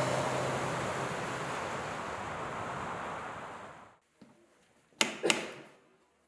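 A rush of noise that fades away over the first four seconds, then two sharp knocks on an old wooden door, about a third of a second apart, near the end.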